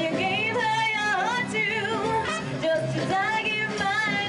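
Big band swing music playing, its melody line carried with a wide vibrato over the full band.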